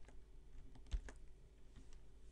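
A few faint keystrokes on a computer keyboard, with one slightly louder key press about a second in.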